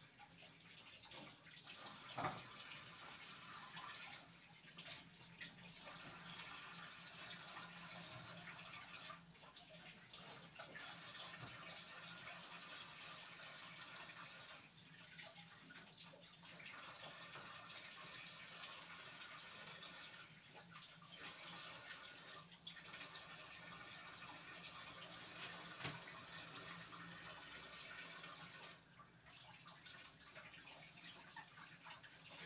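Kitchen tap running faintly into the sink during hand dishwashing, the flow pausing briefly a few times. There is a sharp clink of crockery about two seconds in and another near the end.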